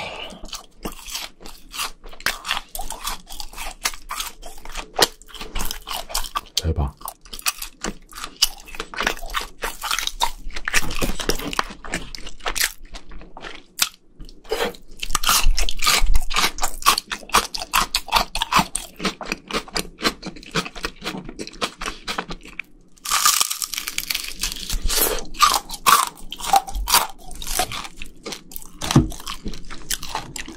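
Close-miked chewing of crunchy fried food: a dense, irregular run of crisp crunches as the batter breaks between the teeth, with louder stretches about halfway through and again about three-quarters of the way in.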